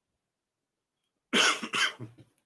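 Near silence, then a man coughs twice in quick succession near the end.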